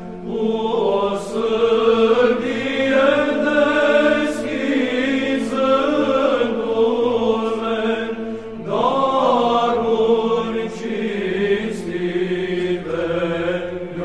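Byzantine chant: voices singing a slow, melismatic line over a steady held drone, with a brief dip and a new phrase starting a little past halfway.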